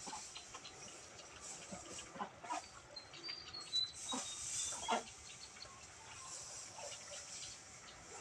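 Dry straw rustling and crackling as it is lifted and heaped by hand, with scattered short crackles and a couple of sharper clicks around the middle. A faint, brief high chirp sounds a little after three seconds in.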